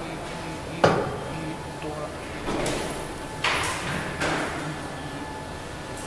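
Metal clamping jaws of a safety valve test bench being pushed by hand into place around the valve: a sharp metal clack about a second in, then three more knocks and scrapes of the jaws sliding and seating over the next few seconds.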